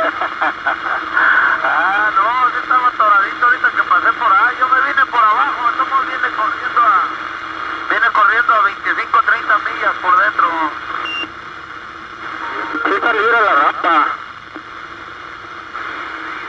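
Vintage Johnson Messenger 123 CB radio receiving other stations' voice traffic through its small speaker: thin, tinny voices in bursts over a steady background hiss, with a pause of a few seconds before a last short burst. The owner thinks the reception sounds slightly off frequency, from the set's crystals drifting.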